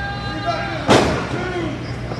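A long held shout from the crowd, then a single sharp slap-like impact in the wrestling ring about a second in, from a wrestler's strike in the corner or a body meeting the ring.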